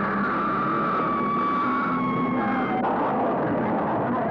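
Loud, dense sustained swell of trailer soundtrack, with several held high tones sliding slowly downward and shifting about three seconds in.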